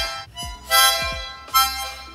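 A child's small toy harmonica blown in separate puffs of chord. A longer blow of about a second is followed by a short one, with gaps between them.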